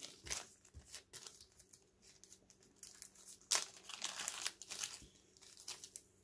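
Clear plastic Estaz packet crinkling and rustling as it is handled to take out the chenille. The crackling is faint and irregular, with a louder stretch about three and a half seconds in.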